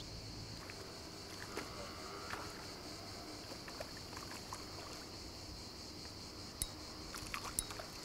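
Quiet evening ambience with a steady, faint high-pitched insect hum. Near the end come a few short faint splashes as a hooked fish breaks the surface.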